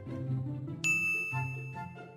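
A single bright bell-like ding about a second in, ringing out for about a second, over soft background music.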